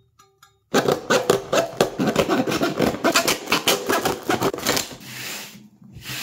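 Fine-tooth hand saw cutting through a cardboard blister card, rapid back-and-forth rasping strokes starting about a second in, then a short smoother scrape near the end.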